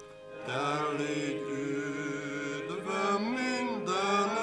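A hymn sung by voices with piano accompaniment, in slow held phrases; a short break between lines about half a second in.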